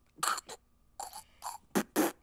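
A man stifling laughter: short sputtering puffs and snorts of air forced through closed lips, about six in two seconds.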